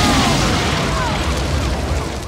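A grenade exploding in a car: a loud boom that keeps rumbling through the whole stretch, with a few falling whistles in the din, dying away near the end.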